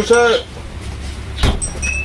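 A voice says "nah", then a single knock about a second and a half in, over a steady low rumble.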